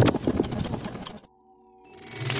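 Sound effects of an animated logo intro: a rapid run of clicks for about a second, which cuts off suddenly to faint steady tones, then a rising sweep near the end.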